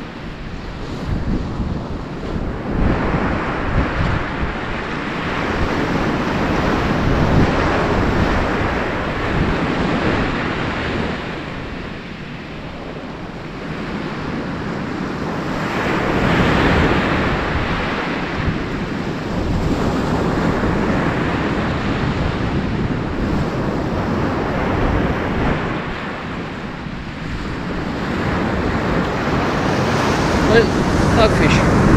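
Surf breaking on a shingle beach, the wash swelling and fading every few seconds, with wind buffeting the microphone.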